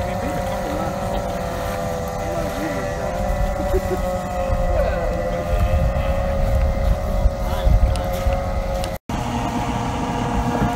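Outboard hydroplane racing engines running at a steady high pitch out on the course, with wind rumbling on the microphone.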